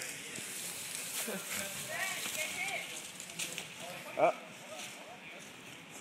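Faint voices of people outdoors, with a short "oh" exclamation and a laugh about four seconds in.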